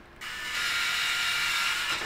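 Motorized smart door lock running its small geared motor to throw the bolt: a steady mechanical whir that starts a moment in and stops just before the end, about a second and a half long.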